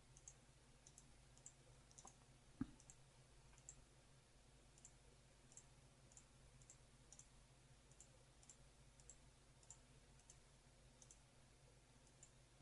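Near silence with a few faint computer-mouse clicks as points are placed, the clearest one about two and a half seconds in.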